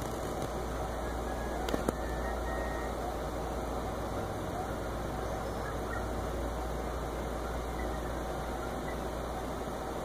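Steady background noise, a low hum under an even hiss, with two faint clicks about two seconds in.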